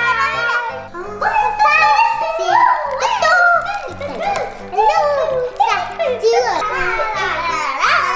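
Two young girls shouting and laughing excitedly over background music with a steady beat.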